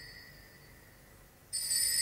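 Altar bell rung at the consecration, marking the elevation of the host. An earlier ring fades away over the first second and a half, then the bell rings again, suddenly and brightly, about one and a half seconds in.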